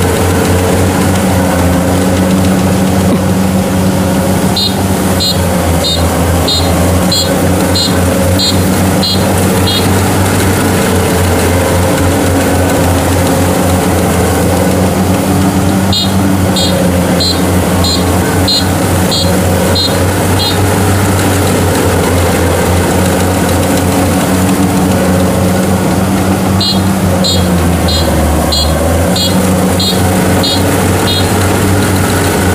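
Kubota DC70 Pro combine harvester running steadily under load as it cuts and threshes rice. Three runs of short, high-pitched beeps sound over the engine, about two a second.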